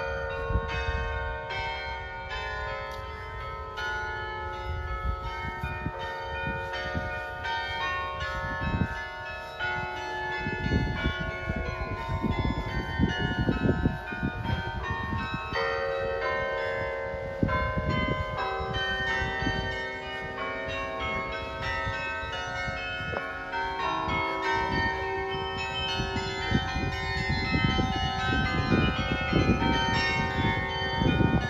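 Carillon of bronze tower bells playing a melody: a continuous run of struck bell notes, each ringing on and overlapping the next.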